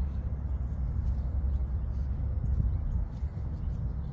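Steady low rumble of background noise, with a few faint soft ticks.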